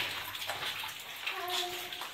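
Water running and trickling in a wet mine tunnel, a steady splashy hiss with a few small drips, and a child's voice starting near the end.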